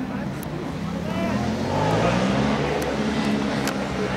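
Distant shouting voices of football players calling across the pitch, over a steady low rumble. The voices get louder about halfway through.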